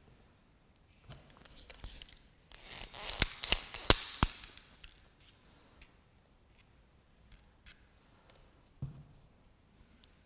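Handling noise: a brief rustle, then a louder crackling rustle with four sharp clicks about three to four seconds in, followed by scattered light ticks and one soft knock near the end.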